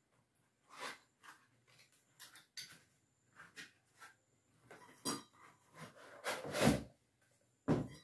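Cardboard box opened by hand: short rustles and scrapes of the flaps, then louder scrapes in the second half as the nested aluminium pot set is pulled out of the box.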